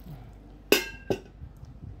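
Kitchenware clinking: a sharp knock with a brief ringing tone, then a second, lighter knock about half a second later.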